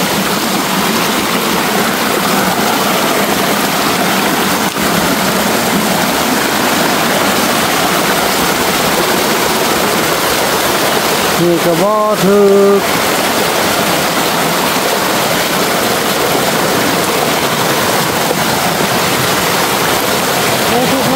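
A fast-flowing, muddy forest stream rushing steadily over rocks, a loud, even wash of water.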